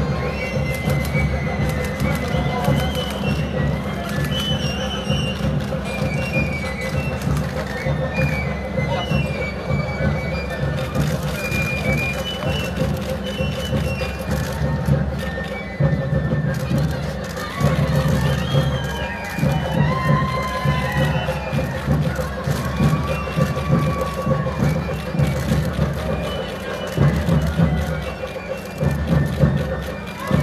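Outdoor crowd of voices and shouts mixed with music, over a steady drone that runs throughout.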